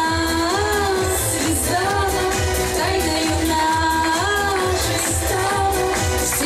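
A woman singing a pop song into a handheld microphone, with long held notes that slide between pitches, over accompaniment with a steady beat.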